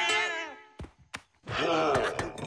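Cartoon character's wordless, groan-like vocalizing over background music. The sound drops almost to silence in the middle, broken by two short clicks, and the voice returns near the end.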